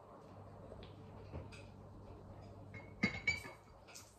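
A porcelain coffee cup set down on its saucer, clinking twice with a short ring about three seconds in.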